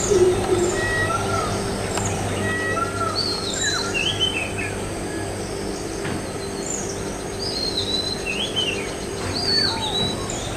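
Mixed chorus of wild birds, several calling at once with many short, rising and falling whistled and chirped notes, over a low steady hum.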